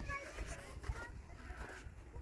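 Footsteps on packed snow as someone walks, with a few short, faint high chirps near the start and about a second in.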